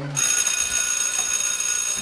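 School bell ringing: a loud, steady, high-pitched ring that starts just after a laugh ends.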